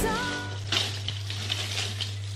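Background music fading out in the first half second, then a steady low hum with hiss and a few faint clicks and rustles of plastic Christmas baubles being handled.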